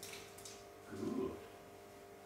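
A black Labrador retriever making one brief, low vocal sound about a second in.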